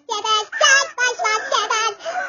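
A very high-pitched voice in quick sing-song syllables, with short breaks about half a second and a second in.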